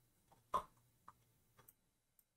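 Three faint, short clicks about half a second apart, the first the loudest.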